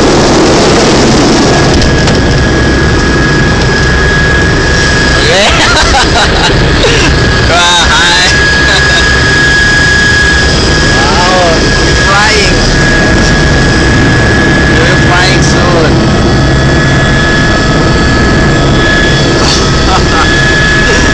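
Turbine engine and rotor of a tour helicopter running steadily, heard from inside the cabin: a steady high whine over loud low noise. Voices break in now and then.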